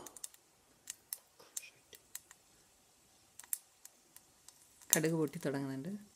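Dried red chillies and whole seeds sputtering in hot oil in a small pan as a tempering: sparse, irregular pops and crackles. A voice speaks near the end.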